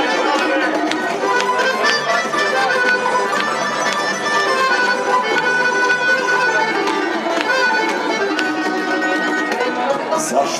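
Tamburica band playing an instrumental passage of a folk song: plucked tamburicas over strummed acoustic guitar, upright bass (begeš) and accordion, with a cajón keeping the beat.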